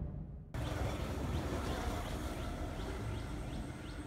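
Outdoor background with a low rumble and a small bird chirping over and over, short rising chirps about twice a second. The tail of the intro music fades out in the first half second.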